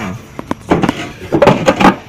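Camera handling noise: rubbing and scraping, with two sharp clicks about half a second in and louder bursts of rustling in the second half.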